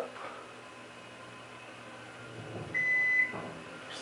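Otis hydraulic elevator's electronic signal giving a single steady, high beep of about half a second, about three seconds in, as the car reaches a floor. A faint low hum from the moving car lies underneath.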